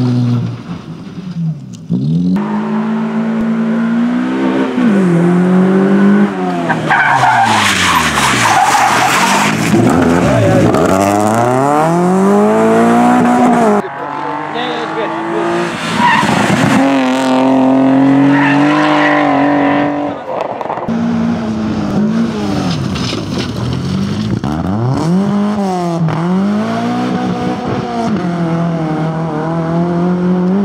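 Club rally cars driving a stage one after another, engines revving hard and falling away again and again through gear changes and lifts, with tyres skidding and squealing in the turns. Loudness dips where one car's run gives way to the next, about a third of the way in and again about two-thirds in.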